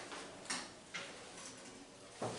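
Two light clicks about half a second apart, over quiet room tone.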